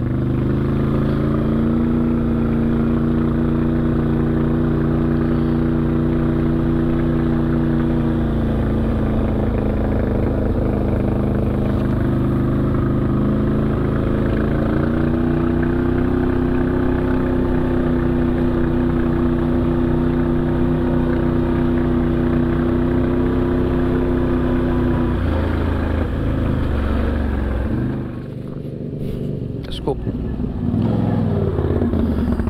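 Off-road vehicle engine running at a steady cruising speed. Its pitch drops about a third of the way in, rises again soon after, and the drone stops a little before the end.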